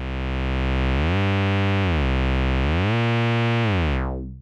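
ES01 software synthesizer playing a buzzy bass note on its Glide Bass patch, held throughout. Twice the pitch slides smoothly up to a higher note and back down again: portamento gliding between overlapping notes.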